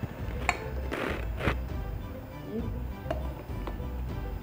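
Soft background music, with a sharp tap about half a second in and two short rustling scrapes around a second in as finely ground coffee is tipped from a hand grinder's catch cup into an Aeropress, and a light click near the end.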